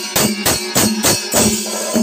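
Kerala temple percussion ensemble of chenda drums and ilathalam brass hand cymbals playing together in a steady, loud beat of about three strokes a second, the cymbals ringing over the drums.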